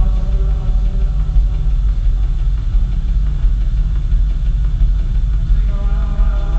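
Loud live electronic synth-punk backing: a distorted synthesizer drone with heavy, pulsing bass, picked up from the audience in a large hall. The higher melodic lines drop out about a second in, leaving mostly the low drone, and come back near the end.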